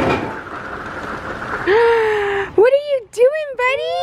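A steady hiss for about the first two seconds, then a toddler's high-pitched wordless vocalizing, several rising-and-falling cries in a row.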